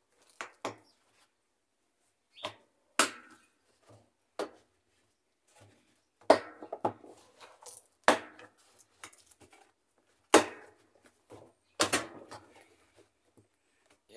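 Plastic tub ring of a Whirlpool/Kenmore top-load washer being pressed down onto the tub by hand, its tabs snapping into place: a series of sharp irregular plastic snaps and knocks, about a dozen.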